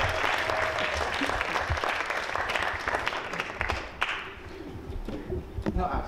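Audience applauding, the clapping dying away about four seconds in, with a few light knocks near the end.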